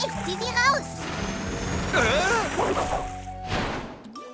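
Cartoon soundtrack: background music with wordless vocal sounds from a character, and a rushing splash of water beginning about a second in, with another short noisy burst near the end.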